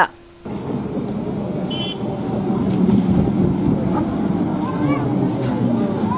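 Busy outdoor ambience: indistinct voices over a steady rumble of background noise, starting abruptly about half a second in.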